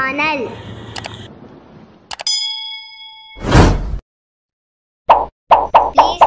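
Subscribe-button animation sound effects: a mouse click, then a bell ding that rings for about a second, followed by a loud whoosh.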